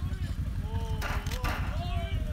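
People talking over a steady low rumble, with a short metallic clatter about a second in as a thrown ball knocks a tin can off a stacked pyramid.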